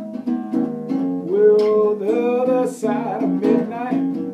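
Solo acoustic blues: a nylon-string classical guitar strummed in a steady rhythm, with a man singing over it from about a second in.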